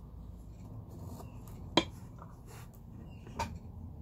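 Pencil faintly scratching as it traces around the edge of a piece of sea glass on masking tape laid over sheet metal. There is one sharp click a little under two seconds in and a softer one later, over a low steady hum.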